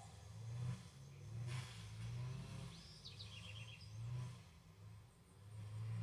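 Faint outdoor background with a low hum that swells and fades. A small bird gives a short run of high chirps about three seconds in.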